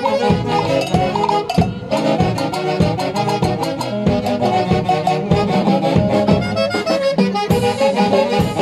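Live band music with a steady dance beat: saxophones, harp and drum kit with timbales playing together, with a brief break in the beat about two seconds in.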